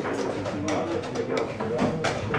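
Low, muffled talk, with a few short sharp clicks in between.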